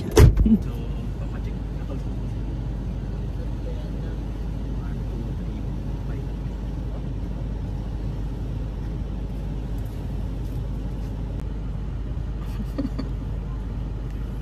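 A parked car's engine idling steadily, heard from inside the cabin. It opens with a short laugh and a brief thump.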